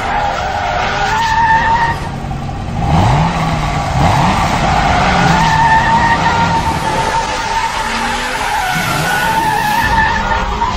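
A car's tyres squealing in a long drift, a steady held screech, with the engine revving in rising glides about three seconds in and again near the end.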